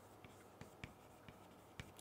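Faint chalk writing on a chalkboard: light scratching with a few small taps as the chalk strokes the board.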